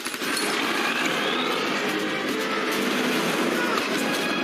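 Action-film soundtrack: a steady, dense wash of noise, like vehicle and street commotion in a chase scene.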